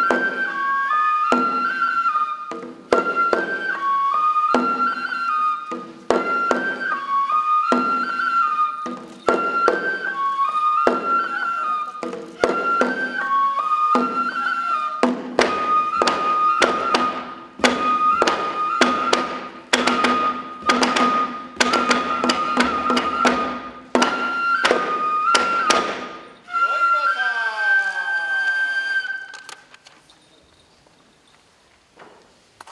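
Japanese folk dance music: a transverse bamboo flute plays a stepping melody over regular sharp percussion strikes, the strikes coming thicker in the second half. It closes on a held flute note, then stops just before the end.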